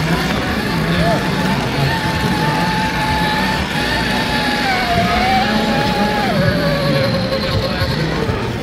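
Axial SCX6 RC rock crawler's electric motor and drivetrain whining as it crawls over rocks, a steady high tone that shifts with the throttle, dipping about halfway through and dropping lower near the end. Voices murmur in the background.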